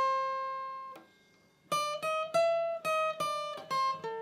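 Steel-string acoustic guitar playing a single-note lead line. A held note rings and fades out over the first second, then after a short pause comes a quick run of about eight plucked notes.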